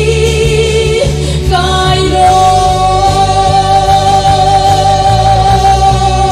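A woman singing a gospel song into a microphone over loud amplified backing music, holding one long note from about two seconds in.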